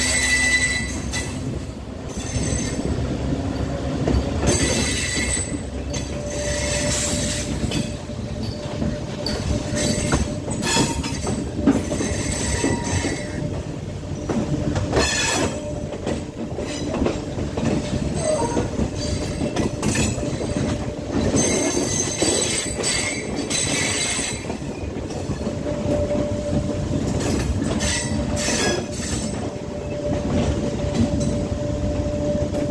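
Class S11 express diesel multiple unit running along the track, heard at the open carriage side: a steady rumble and clatter of wheels on rails, broken by repeated short spells of high-pitched wheel squeal as it runs over curves and points.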